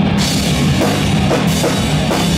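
Live rock band playing loud: electric guitars, bass guitar and a full drum kit, with a cymbal crash as the drums come in at the start.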